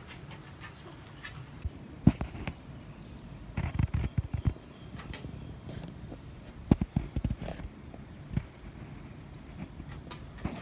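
Handling noise from a phone camera being moved and turned: scattered knocks and bumps, a few in quick clusters, over a faint steady outdoor background.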